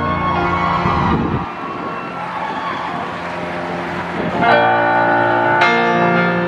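Slow, sustained piano chords opening a pop ballad, with a new chord struck about four and a half seconds in and left to ring.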